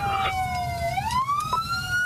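Police car siren wailing during a pursuit. Its pitch slides slowly down, then sweeps back up about a second in and holds high.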